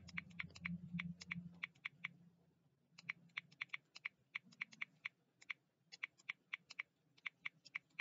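Typing on a computer keyboard: quick runs of key clicks broken by short pauses, over a faint steady low hum.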